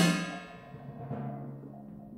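A loud percussion stroke of cymbal and deep drum rings out and dies away. The high shimmer fades within half a second, while a low ringing tone holds for nearly two seconds before fading.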